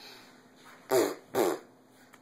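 A young child blowing two short raspberries with the lips, about half a second apart, a second in.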